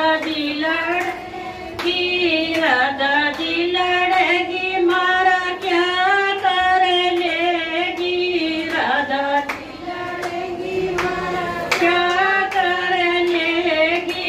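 A woman singing a melody into a microphone, with long held notes that waver slightly. Hand claps keep time along with her.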